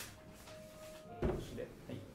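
A single dull knock of something set down on a wooden table, about a second in.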